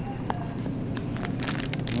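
Rustling and scattered small clicks of a handheld phone being moved about, over the steady hum of a store's background.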